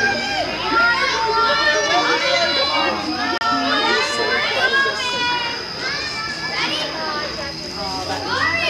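A group of young children shouting and chattering at once while playing, many high voices overlapping and rising and falling in pitch.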